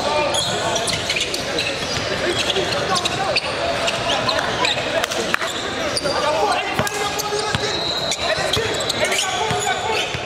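Basketball game in a large gym: a ball bouncing on the hardwood court in repeated sharp knocks, over a steady echoing mix of player and spectator voices.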